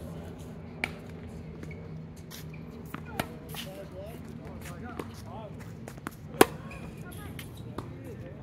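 Tennis ball being hit by rackets during a rally: a few sharp pops spaced one to three seconds apart, the loudest about six and a half seconds in. Faint voices are in the background.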